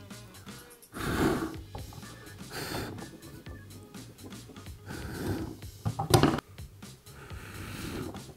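A person blowing repeated puffs of air through pursed lips into the narrow gap between two empty plastic bottles, with a brief sharp sound a little after six seconds in.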